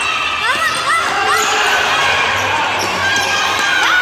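Sneakers squeaking on a polished indoor futsal court as players run and turn: a cluster of short squeaks in the first second or so and more near the end, over spectators' voices.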